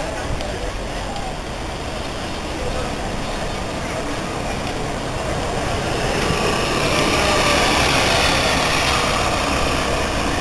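Vintage Sóller electric tram approaching on its street track. Its running noise grows louder and brighter from about six seconds in as it draws near.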